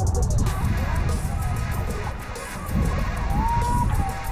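Background music over a heavy low rumble of wind buffeting the camera's microphone.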